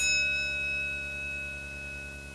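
An elevator chime struck once: a bright bell tone that rings and slowly fades.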